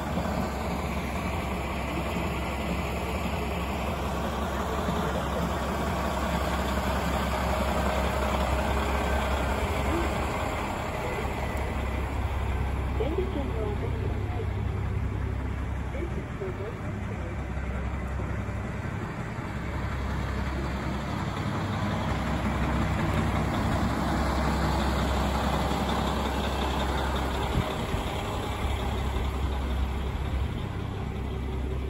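KiHa 40 diesel railcar idling at a station stop, a steady low engine rumble.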